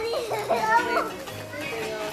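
Children's voices chattering and calling at play, with music playing in the background.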